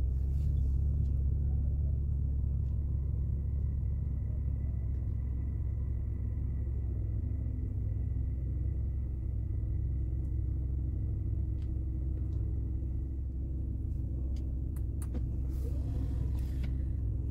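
Bentley Continental GT W12's twin-turbo 6.0-litre W12 engine idling, a steady low rumble heard from inside the cabin. A faint steady high whine sits over it through the middle, and a few light clicks come near the end.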